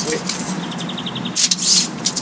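A small bird trilling: a quick run of short, evenly spaced high notes about a second in, with a brief rustle just after.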